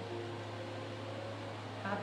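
A steady low hum with faint held tones above it, in a pause between words; a woman's voice comes back just at the end.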